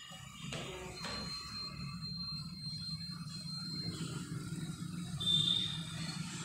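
Steady low room hum, with a faint thin high tone partway through and a brief higher squeak near the end, among faint knocks of movement.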